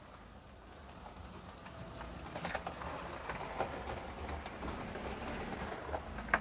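Faint outdoor background noise with scattered light clicks and rustles, a little louder from about two seconds in.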